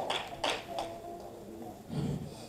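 A few scattered hand claps from the congregation dying away, with a faint held musical note under them.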